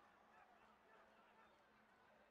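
Near silence: faint background noise with a low steady hum.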